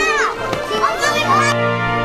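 Excited young children's voices, high-pitched and squealing, over steady background music; the voices stop about one and a half seconds in, leaving the music alone.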